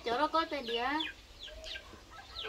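Chickens clucking, with a woman's voice in the first second.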